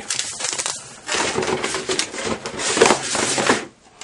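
Packaging rustling and crinkling, with a few light knocks, as a bottle is lifted out of a cardboard kit box.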